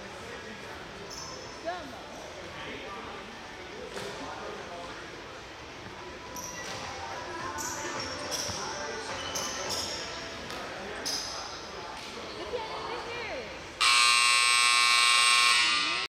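Gym scoreboard buzzer sounding one loud, steady blast for about two seconds near the end. Before it, a large hall with faint voices murmuring and a few scattered thuds of a basketball bouncing.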